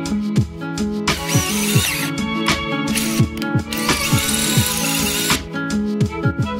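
Background music with a steady beat. Over it, a power drill runs in two stretches, from about a second in and again from about three to five seconds in, drilling through a steel wheel bolt head to make a hole for safety wire.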